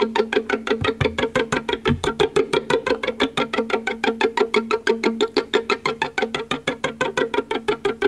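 Violin pizzicato played as a rapid, even stream of plucked notes on the strings, a technique the player calls a "phaser".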